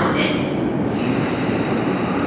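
Steady running noise of a stopped JR East E235 series 1000 electric train at an underground station platform. A thin high whine joins in about a second in.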